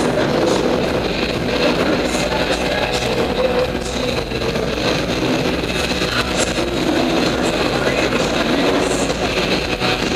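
Dirt-bike engines running and revving together in a large indoor hall, a loud, steady mix.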